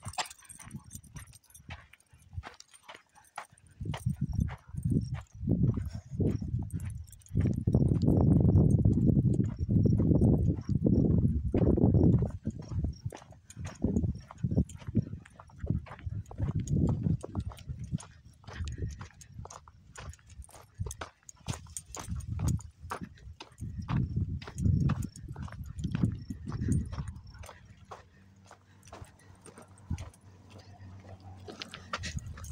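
Footsteps on a dirt trail, with the steps of two leashed dogs, as a steady run of short crunching steps about two a second. A low rumble comes and goes over them, loudest for a few seconds in the middle.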